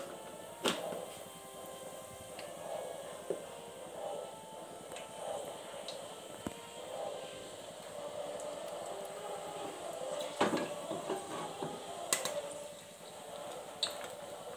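Whole spices (cinnamon, cloves, cardamom, bay leaves) frying faintly in hot oil in a pressure cooker, with a few sharp clicks or knocks: one about a second in, and two more around ten and twelve seconds in.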